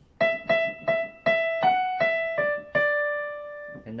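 Casio CDP-130 digital piano playing a slow single-note melody with the right hand: about eight notes struck one at a time, the line stepping up briefly in the middle and settling onto a lower final note that is held for about a second.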